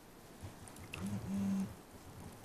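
A brief low hummed 'mm-hmm'-like murmur from a person's voice about a second in, in two parts, over quiet room tone.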